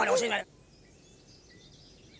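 A cartoon character's short wordless vocal sound, then faint forest ambience with birds chirping.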